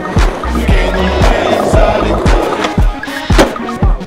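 Skateboard wheels rolling over stone paving, heard over music with a steady, deep beat. There is a sharp clack of the board about three and a half seconds in.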